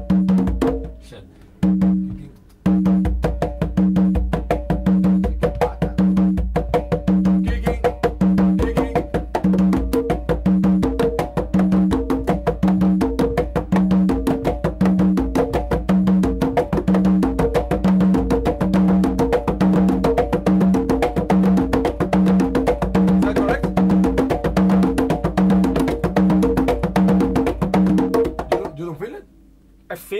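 Two players on conga drums playing together by hand: rapid interlocking strokes over a low open tone that repeats at an even pace, roughly every two-thirds of a second. The playing drops away briefly about a second in, picks up again, and stops about a second before the end.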